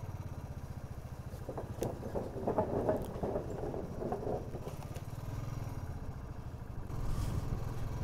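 Motorcycle engine running steadily while riding, heard from the bike as a fast, even low beat, with road and wind noise. It gets louder for a couple of seconds in the middle.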